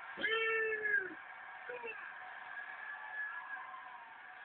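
Arena crowd noise at a wrestling show, with one loud, drawn-out shout from a spectator about a quarter-second in and a shorter call just before the two-second mark, then a steady crowd murmur.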